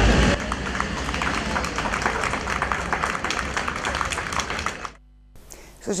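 A string ensemble's music stops just after the start, and a small crowd claps for about four and a half seconds. The applause cuts off abruptly, leaving a brief gap.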